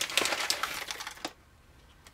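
Whole coffee beans clattering and rattling as a scoopful is taken and tipped into a hand burr grinder's hopper, a dense run of small clicks that stops a little over a second in.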